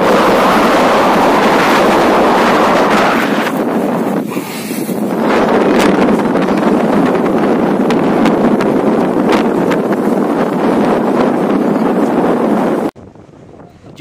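Strong wind blowing over the microphone beside a wide, choppy river: a loud, steady rushing noise that eases for about a second around four seconds in and cuts off suddenly about a second before the end.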